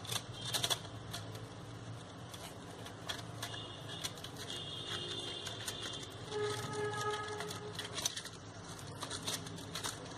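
Faint rustling and small irregular clicks of green floral tape being stretched and wound by hand around wire flower stems, with crepe-paper leaves brushing against them.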